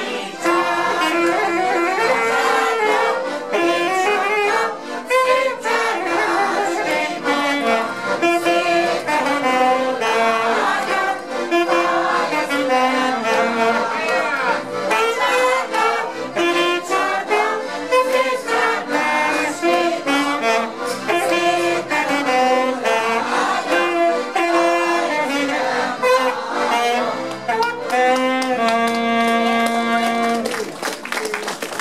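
A Hungarian nóta (folk song) performed by a mixed choir with two accordions and a saxophone. The song ends on a long held chord near the end.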